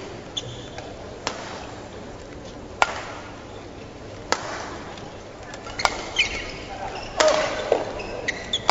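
Badminton rally: racket strikes on a shuttlecock, four in a row about a second and a half apart, then court shoes squeaking on the mat near the end, over the murmur of a large hall.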